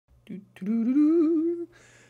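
A person humming one wavering note for about a second, with a short breath after it.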